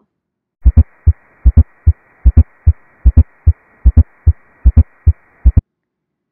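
Recorded heart sounds with an S4 gallop: a three-beat rhythm of a close pair of dull thumps then a single one, repeating a little over once a second, over a faint hiss. The extra sound comes at the end of diastole, just before S1.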